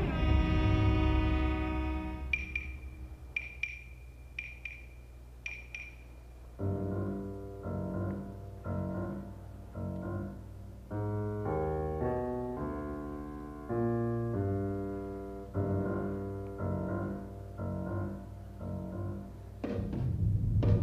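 Suspenseful dramatic score. A held string chord fades over the first two seconds, then a few short high pinging notes sound. From about six seconds in, slow, separate piano notes are struck one at a time, each dying away, and a loud hit comes just at the end.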